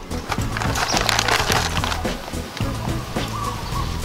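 A dense, irregular crackling noise, loudest about a second in, over steady background music.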